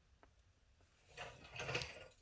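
Near silence with a faint tick, then about halfway through a short, soft rustle of handling noise.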